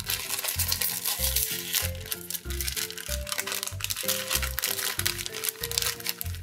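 Crinkling of a foil blind-bag wrapper as hands open it, over background music with a steady beat.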